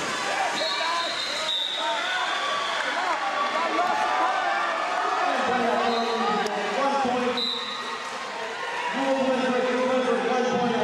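Sports-hall background during a wrestling bout: indistinct voices and shouts, with many short squeaks of wrestling shoes on the mat and floor.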